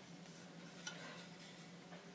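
Near silence: room tone with a faint steady hum and one soft tick a little under a second in.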